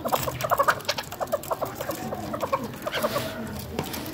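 Chukar partridge calling: a fast run of short, repeated chuck notes, several a second.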